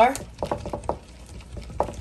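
A utensil stirring an oily liquid marinade in a small glass bowl, with several light clinks and scrapes against the glass.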